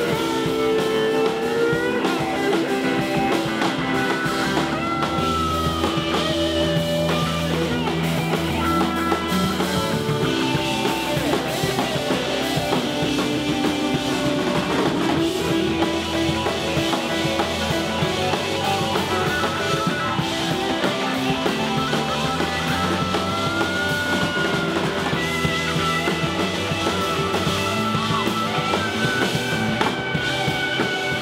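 Live rock band playing: electric guitars over a drum kit, full and steady, with pitched lines gliding up and down.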